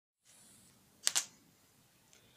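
Two quick, sharp clicks about a tenth of a second apart, about a second in, over faint background hiss.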